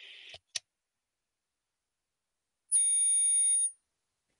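A high-pitched electronic whistle, several steady tones sounding together, lasting about a second near the end: audio feedback in a video call, which the speaker blames on his volume being a touch too loud. Before it, a faint hiss cuts off with a click.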